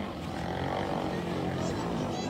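Engines of two racing boats running flat out across the water, a steady drone with many overtones.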